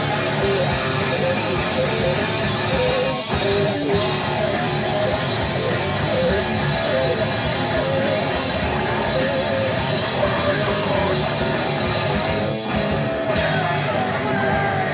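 Live heavy metal band playing: electric guitars over drums and cymbals, with two short breaks in the sound, about three seconds in and near the end.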